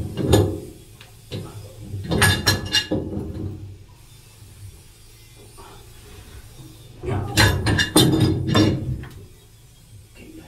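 Metal wrench clicking and clanking on a boat's rudder shaft packing gland nut as it is tightened to stop seawater leaking in. It comes in three bursts: at the start, about two seconds in, and a longer one about seven seconds in.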